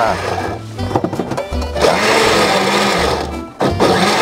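Countertop blender pulsed in short goes, chopping tomatoes and garlic to a coarse purée rather than juice. The motor runs steadily through the second half, cuts out briefly near the end, and starts again.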